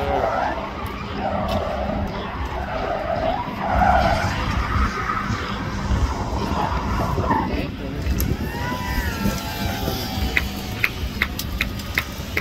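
Chevrolet Camaro drift car's engine running at high revs as it drifts, its rear tyres squealing and skidding, the squeal easing after about seven seconds. A few sharp clicks come near the end.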